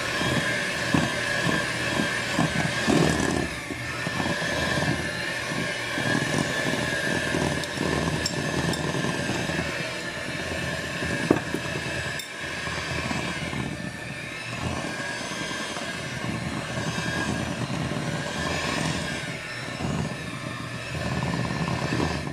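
Electric hand mixer running steadily, its two beaters churning a thick, dry batter of flour and ground nuts in a glass bowl, with a constant motor whine and a couple of sharper clicks near the middle.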